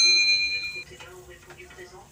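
Notification-bell sound effect: a bright electronic ding with a clear high ring that lasts under a second and then stops.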